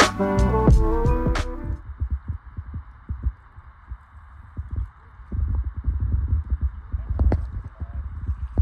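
Background music with a drum beat ends about two seconds in. After that, irregular low rumbling of wind on the microphone over a faint steady hiss.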